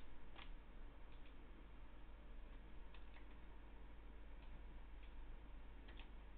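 Faint, scattered clicks of computer input at a desk, about eight in six seconds, irregularly spaced, over a steady low hum.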